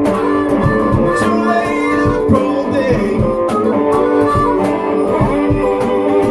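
A small blues band playing a slow blues: a strummed acoustic guitar with a harmonica over it and a steady beat underneath.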